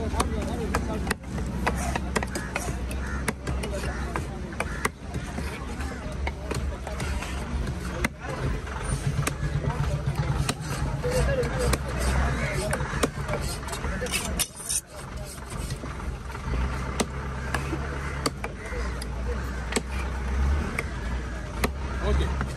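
Heavy cleaver chopping through goliath grouper flesh and bone on a wooden log chopping block, sharp knocks at irregular intervals. Background voices and a low steady rumble run underneath.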